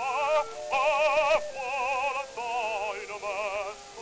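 Operatic bass voice singing with a wide, even vibrato, with orchestra, on a 1907 acoustic recording played from a Victor 78 rpm disc: a thin sound with no deep bass. After a brief break about half a second in, he holds a louder note, then moves on through shorter phrases.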